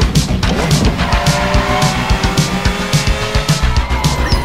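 Film soundtrack with synth music on a steady beat. About a second in, a sports car speeds off with its engine revving and tyres squealing.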